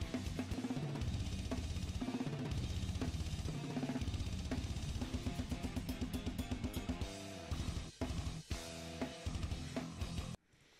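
Drum kit played at high speed with rapid bass drum strokes, snare and cymbals along with a technical death metal band track, with held guitar chords and a couple of brief breaks near the end.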